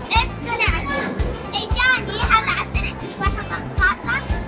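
High children's voices over background music with a steady beat.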